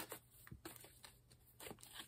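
Faint, irregular soft clicks and rustles of a tarot deck being shuffled by hand, cards sliding against each other.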